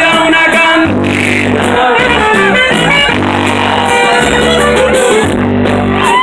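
Live Mexican regional dance band with saxophone playing loudly: steady bass notes under a melody line, with one long held note near the middle.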